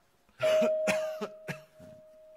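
An elderly man coughing: a fit of about four coughs starting about half a second in, over a faint steady held tone.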